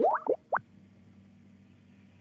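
Skype new-message notification sound: a quick bubbly pop made of three short sliding blips within about half a second, signalling an incoming chat message.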